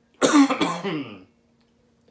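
A man clearing his throat, a short rough rasp that runs straight into a spoken "yo".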